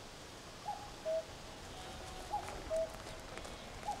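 A bird calling a repeated two-note call, a short higher note followed by a slightly lower held one, three times about a second and a half apart, over faint outdoor background noise.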